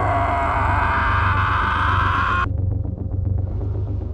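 Horror trailer sound design: a loud, slightly rising swell of noise over a low drone, cutting off suddenly about two and a half seconds in. The low drone continues after the cut, with a fast pulse of about six or seven ticks a second.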